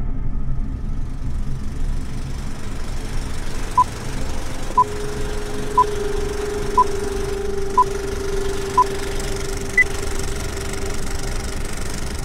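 Film countdown leader sound effect: a short beep once a second, six times, then a single higher-pitched beep on the count of two. Under it runs a steady rumbling whir like an old film projector, with a sustained low hum through the middle.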